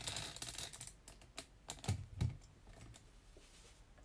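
Quick light clicks and taps, dense for about the first second and a half, then a few scattered taps with two soft low thumps around two seconds in.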